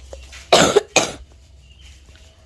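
A person coughing twice, the coughs about half a second apart.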